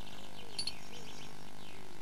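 Faint background birdsong: a few short, high chirps over a steady low hiss, mostly in the first half.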